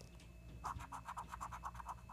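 A coin scratching the coating off a scratch-off lottery ticket in quick back-and-forth strokes, several a second, starting a little over half a second in.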